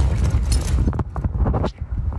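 Handling noise: a few irregular knocks and rustles as a fabric diaper bag is picked up and brought close to the phone's microphone, over a low wind rumble on the microphone.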